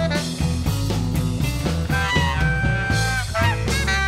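Electric blues band playing an instrumental passage: a lead line of bending, held notes over a steady bass and drum beat.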